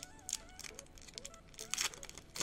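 Foil wrapper of a Pokémon TCG booster pack crinkling as it is handled, with a louder crackle near the end.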